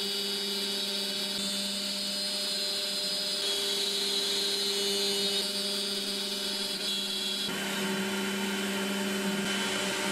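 Makera Z1 desktop CNC mill's spindle running steadily while a small end mill cuts aluminium on a contour pass around the outer profile of a knob. The sound is a steady machine whine, and its tone shifts about three-quarters of the way through.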